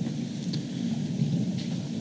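Steady low rumbling background noise of a large room, with no distinct events.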